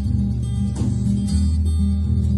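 Dion Model No.4 acoustic guitar played solo fingerstyle, low bass notes ringing under picked melody notes, with one sharper stroke just under a second in and the bass note changing shortly after.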